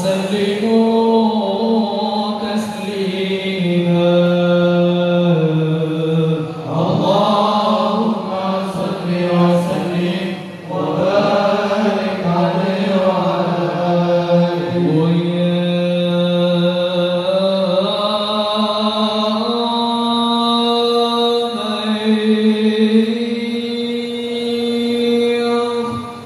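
Sholawat, devotional Arabic praise of the Prophet, chanted by men's voices in long held notes that step and glide slowly from one pitch to the next.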